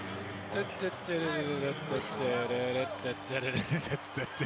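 Basketball game broadcast sound: commentators' voices over the court, with a few short, sharp knocks of the ball bouncing on the hardwood near the end.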